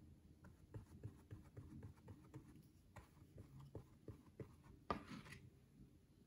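Faint soft taps and strokes of a paintbrush mixing acrylic paint on a paper-plate palette, two or three a second, with a louder brief scrape about five seconds in.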